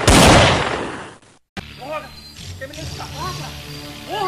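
Explosion sound effect: a loud blast of noise that dies away over about a second and a half and then cuts off abruptly. After a short gap, quieter short arching calls over a low hum.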